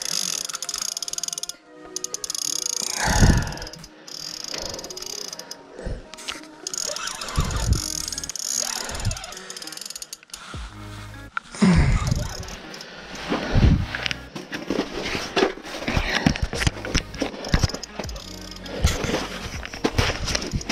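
Spinning fishing reel clicking as it is cranked and as its drag gives line to a heavy fish, with irregular knocks from handling the rod, over background music.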